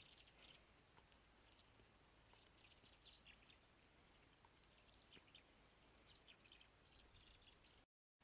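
Near silence: faint outdoor background with a few short, faint high chirps of distant birds scattered through it. The sound cuts out completely just before the end.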